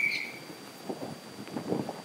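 A thin, high whistling tone, rising slightly in pitch, that fades out about half a second in. After it there is quiet room sound with a few soft ticks and rustles.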